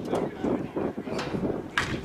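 A slowpitch softball bat hits the ball once, sharply, near the end, over steady background voices and outdoor noise.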